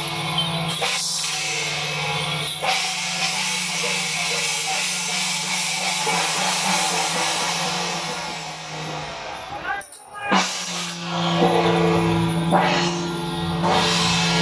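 Temple procession music accompanying a Guan Jiang Shou troupe's dance: drums and clashing cymbals over a steady held note. It breaks off briefly about ten seconds in, then starts again.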